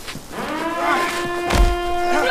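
A man's long, drawn-out yell that rises in pitch and then holds steady, as in a fight. A heavy thud lands about one and a half seconds in.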